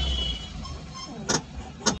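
Low rumble of a vehicle heard from inside its cabin while driving, easing off about half a second in, with two sharp clicks in the second half.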